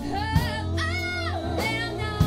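A live blues band: a woman sings lead in held, bending notes over a steady bass line and a drum kit, with a sharp drum hit about a third of a second in.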